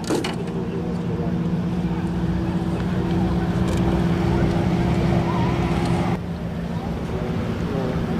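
A boat engine running steadily, a low even drone over wind and water noise. It drops and changes abruptly about six seconds in.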